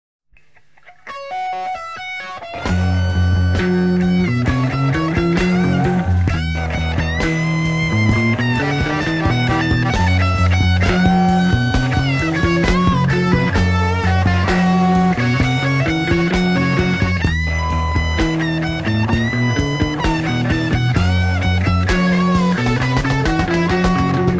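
Instrumental opening of a 1972 heavy psychedelic rock recording: a few quiet notes, then about two and a half seconds in the full band comes in loud with electric guitars, bass guitar and drums, the low line repeating a climbing riff.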